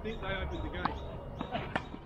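Two sharp knocks of a tennis ball about a second apart, after a brief voice at the start.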